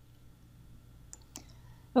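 Two computer mouse clicks about a quarter of a second apart, over a faint steady low hum.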